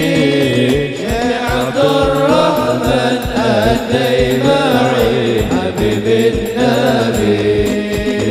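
Sholawat sung by a lead voice through a microphone, with a low drum beating steadily underneath.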